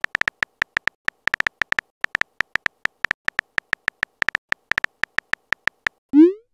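Phone keyboard typing sound effect: a quick run of short, high, clicky key ticks, about six a second at an uneven pace, one tick for each letter as a text message is typed out.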